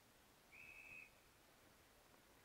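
Field umpire's whistle blown once: a single short, faint, steady blast of about half a second, about half a second in, stopping play.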